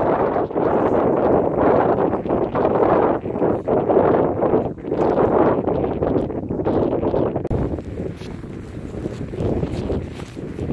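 Wind buffeting the camera microphone in uneven gusts, easing somewhat near the end.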